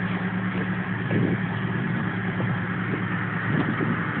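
A car engine idling: a steady low hum over general street noise.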